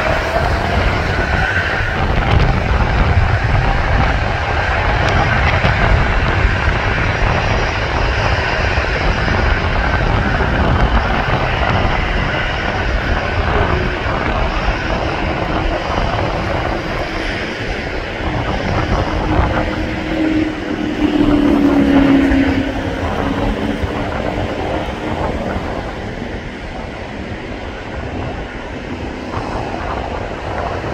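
Boeing 777-200LR's twin GE90 turbofans at takeoff thrust: a steady, loud deep rumble as the airliner rolls away down the runway on its takeoff run, easing somewhat near the end. A brief lower tone swells and fades about two-thirds of the way through.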